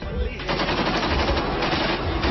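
Continuous rapid crackling rattle of closely packed sharp pops at a steady level.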